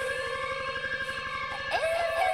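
Tech house music from a DJ mix: a sustained, siren-like synth tone held over a fast pulsing low beat, with rising synth swoops coming in near the end.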